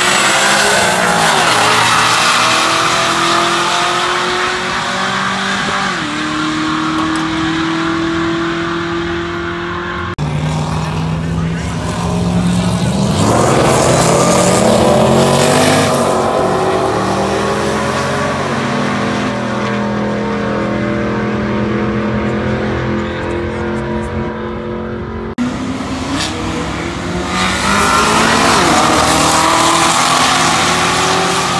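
Pairs of street cars roll racing side by side down a drag strip, their engines loud at full throttle as they pull hard and sweep past. The pitch climbs and drops with each gear change. Three separate runs are heard, each ending abruptly.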